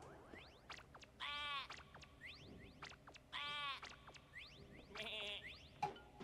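Sheep bleating in an anime's soundtrack, faintly: two long wavering bleats about two seconds apart, then a shorter one near the end.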